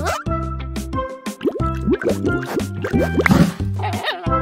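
Children's cartoon background music with comic sound effects: many short, quick rising squeaky glides and drip-like plops.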